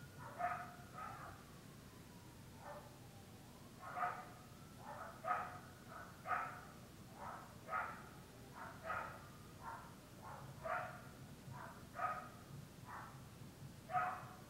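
A dog barking over and over, faint: a run of short barks, more than one a second, with a pause of a couple of seconds near the start.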